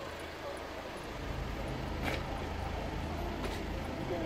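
A vehicle engine idling nearby with a low steady hum that grows louder about a second in, with two short clicks.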